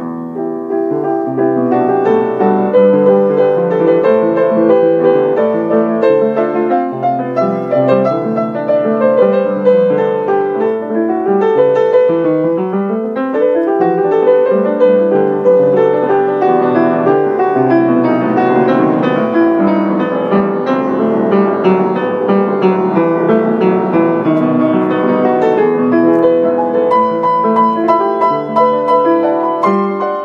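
Upright piano played in a freely improvised Baroque and Romantic style: dense, flowing passages with a quick scale run down and then up about twelve seconds in. Recorded on a mobile phone, with little bass.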